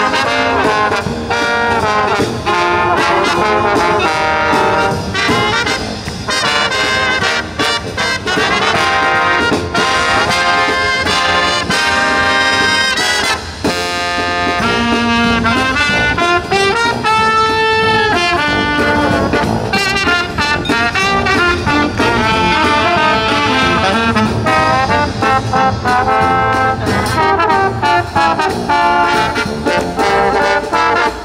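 A live marching brass band plays a Christmas medley: trumpets, trombone, saxophones and a sousaphone over snare and bass drums.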